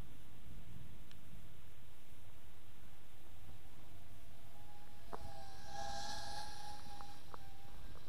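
Steady low wind rumble on the microphone, with the faint high whine of a small brushless racing quadcopter's motors and tri-blade props rising in from about halfway, strongest a couple of seconds before the end, then fading.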